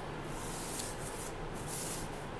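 Drafting tools rubbing across drawing paper as a plastic set square is shifted to a new position on the sheet: two dry scraping strokes, the first about a second long, the second shorter near the end.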